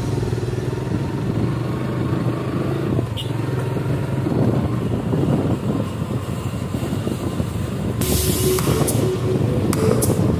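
Motorcycle engine running at a steady cruise with road noise, heard from a phone on the rider's helmet chin mount. A brief hiss comes about eight seconds in.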